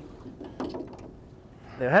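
Fishing reel being wound as a hooked flathead is played, a faint mechanical clicking and whirring; a man starts speaking near the end.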